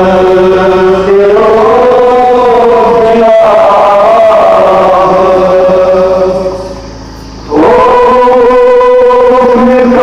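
A nauha, a Muharram lament, chanted by a man's voice in long, slowly gliding held notes. The voice falls away briefly about two-thirds of the way through, then a new phrase starts loud.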